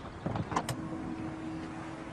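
A car's tailgate unlatching with a few sharp clicks, then a steady electric motor hum for about a second as the power tailgate lifts open.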